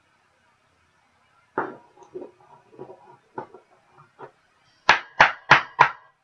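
A trading card being handled in plastic: soft irregular rustles and clicks as it is slid into a sleeve and rigid top loader. Near the end come four sharp taps about a third of a second apart, the loudest sounds here.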